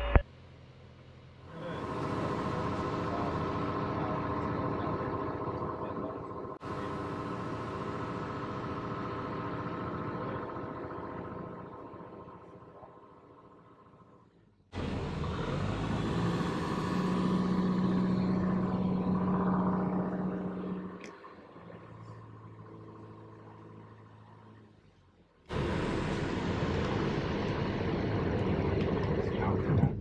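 Piper Cherokee PA-28-180's four-cylinder engine and propeller heard inside the cabin, droning at reduced landing power. The sound breaks off abruptly several times and fades between the breaks, and a steady low tone sounds for about four seconds midway through.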